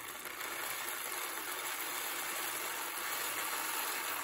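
Whole roasted coffee beans pouring in a steady stream from their bag into a glass mason jar, a continuous rattling hiss of beans sliding and piling up against the glass.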